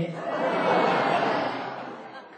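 A crowd of people laughing together, fading away over the second half.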